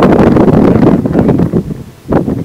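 Wind buffeting the microphone: a loud, low rumble that eases off near the end.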